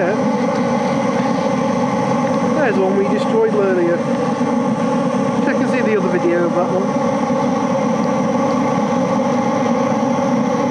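Oil burner firing steadily: its fan and flame make a constant, even noise with a steady hum, unchanged throughout. A person laughs briefly twice over it, about three and six seconds in.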